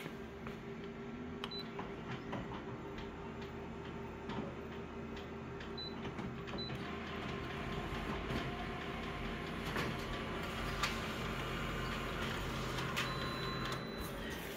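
Office multifunction copier making a single black-and-white copy. A few short high beeps come first, then from about halfway the machine runs with a steady whine and whirr as the page feeds through. It stops shortly before the end with one more beep.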